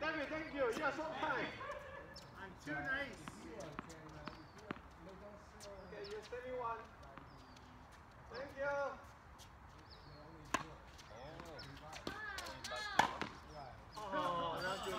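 Tennis ball struck by racquets and bouncing on a hard court during a rally: scattered sharp pops, the loudest near the end. Players' voices are heard between the shots.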